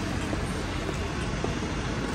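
Steady street traffic noise: passing cars and their tyres on wet roads.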